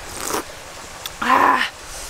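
Broth slurped from a coconut-shell bowl: a short sip at the start, then a longer, louder slurp about halfway through.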